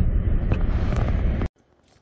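Ford Ranger pickup driving on a gravel road: a low rumble of engine and tyres with some wind noise. It cuts off abruptly about one and a half seconds in, leaving faint room tone.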